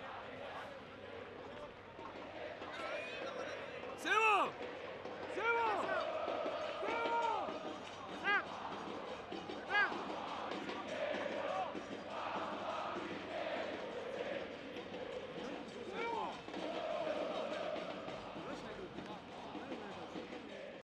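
Live pitch-side sound of a football match: short shouted calls from players and coaches come again and again over a low murmur from a thin crowd. A sharp thump about four seconds in, as a shot is struck at goal.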